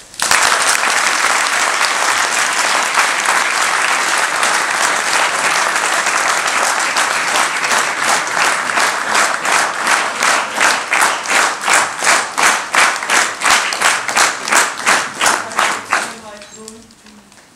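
A theatre audience applauding. It breaks out suddenly, and about halfway through the clapping falls into unison, a steady rhythm of about three claps a second.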